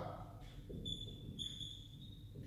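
Whiteboard marker squeaking as it writes on the board: two faint, thin, high-pitched squeaks, one about a second in and a longer one just after.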